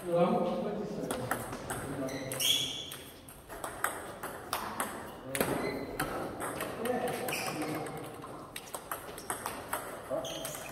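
Table tennis ball clicking off bats and bouncing on the table during serve-and-receive practice: many sharp, uneven ticks in quick bunches, with a large hall's echo behind them.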